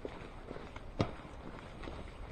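Footsteps of a person walking on a paved sidewalk, about two steps a second, with one heavier step about halfway through, over faint street ambience.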